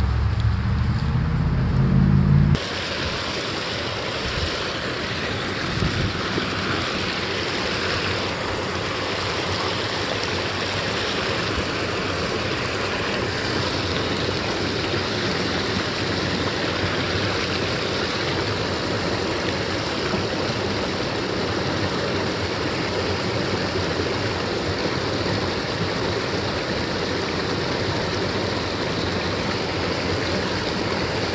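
A low rumble that stops abruptly about two and a half seconds in, then a small creek waterfall pouring over a rock ledge: a steady rush of water.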